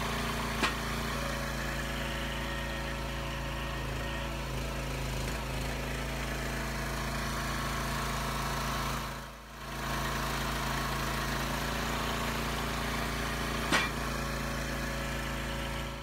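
Small gasoline engine of a log splitter running steadily at constant speed, with a brief dip in level about halfway through. A short knock sounds about a second in and another near the end.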